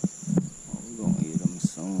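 A steady, high-pitched drone of insects, with a man's short low vocal sounds over it and a couple of sharp clicks in the first half-second.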